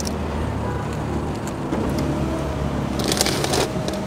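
Paper takeaway bag rustling and crinkling as it is opened and rummaged in, with a short loud burst about three seconds in, over a steady low hum inside the car.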